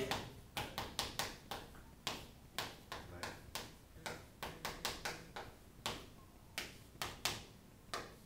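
Chalk on a chalkboard writing out an equation: an irregular run of short, sharp taps and scratches, several a second, that thins out near the end.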